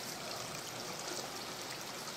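Steady trickle and splash of water falling in several running garden fountains.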